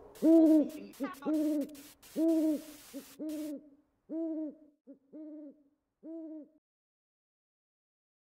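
A string of owl hoots, each a short note that rises and falls, over a faint hiss with a few clicks for the first three and a half seconds. The hoots then grow quieter and further apart and stop about six and a half seconds in.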